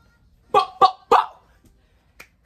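A person laughing in three short, sharp bursts about a third of a second apart.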